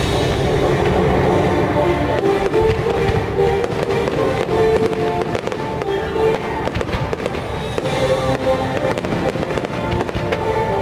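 A dense barrage of fireworks going off in quick succession, with sharp bangs and crackling over a continuous low rumble, played against orchestral show music.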